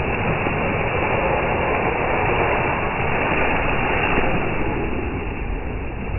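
Traxxas TRX-4 RC truck driving through a muddy puddle: water and mud splashing steadily under its tyres, with no clear motor tone.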